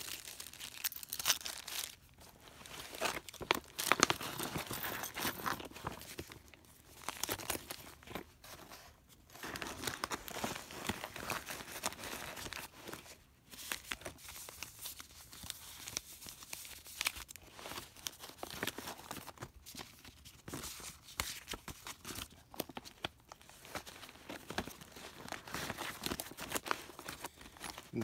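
Paper-wrapped gauze pad packets and the kit's clear plastic pockets being handled and shuffled, rustling and crinkling unevenly with many small sharp clicks.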